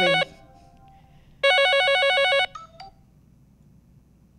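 Mobile phone ringtone: a warbling electronic ring sounding in bursts of about a second, one cutting off just after the start and another about a second and a half in, signalling an incoming call.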